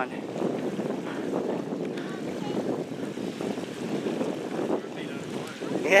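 Steady wind rushing on the microphone over the wash of gentle surf along a rocky shore.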